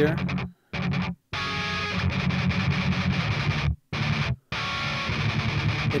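Distorted electric guitar riff reamped from a recorded DI track through a Kemper Profiling Amplifier, stopping dead to silence for short breaks four times. The Kemper's reamp sensitivity is being turned, which adds more or less definition to the tone.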